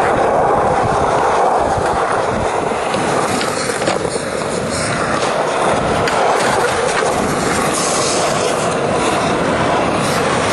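Skateboard wheels rolling steadily over smooth concrete, with a grind or scrape on a ledge partway through.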